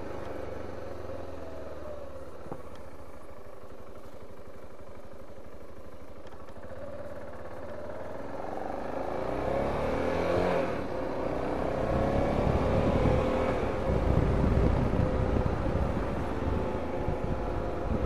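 BMW G 650 GS Sertao's single-cylinder engine running under a rider on the road. It holds steady and fairly quiet at first, then rises in pitch as the bike accelerates from about halfway through, with a brief dip like a gear change. It then pulls on louder, with wind rumble on the microphone.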